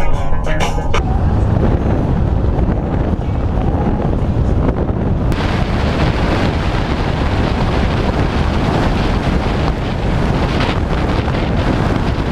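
A moving vehicle's rumble, with the road noise of a wet road, takes over as music ends about a second in. About five seconds in, a loud hiss of wind buffeting the microphone suddenly joins it and stays steady.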